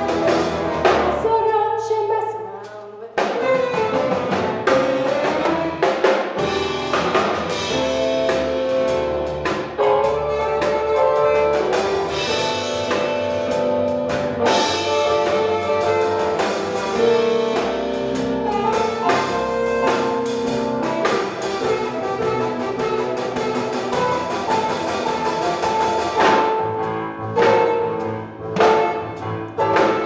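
Pit band with saxophones and drum kit playing an instrumental passage of a rhythm-and-blues show tune. A sung phrase ends about two seconds in and the sound drops briefly before the band comes in. Near the end the band plays short, separate hits with gaps between them.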